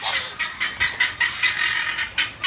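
A guineafowl chattering in a rapid series of harsh notes, about four or five a second.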